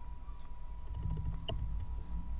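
Low steady background hum with a faint thin steady tone, and a single short click about one and a half seconds in.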